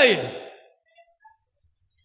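A man's voice ends a word on a falling, breathy note that fades over the first half second, then a pause of near silence.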